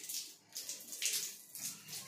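Water running from a bathroom wall tap and splashing onto cupped hands and a scrubber held under the stream. The splashing comes and goes unevenly as the hands move in the flow.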